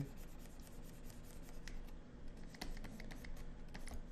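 Faint scratching and irregular small clicks of a stylus nib against the screen of a pen display as short strokes are drawn.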